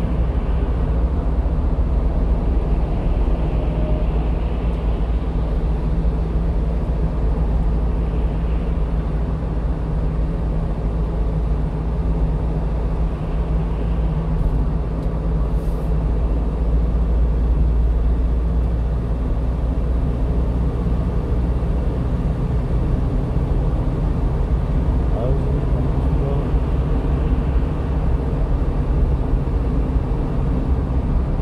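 Steady engine drone and tyre rumble heard inside the cab of a 1-ton delivery truck cruising on a highway.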